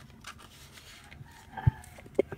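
Faint rustle of banknotes being slid into a clear plastic zippered envelope, with a soft knock near the end.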